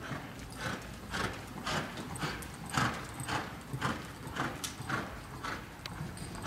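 Hoofbeats of a quarter horse mare moving under saddle on arena dirt, an even run of strikes about two a second.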